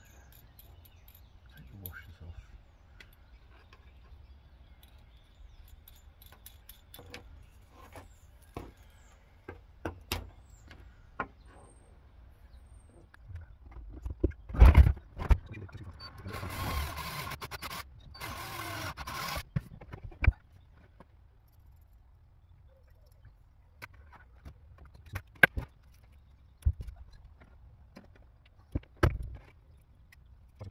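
Cordless drill with a step drill bit boring through the plastic rear trim panel for about three seconds, starting a little past halfway. Scattered clicks and knocks of wire and tool handling come before and after it, with two sharp knocks just before the drilling.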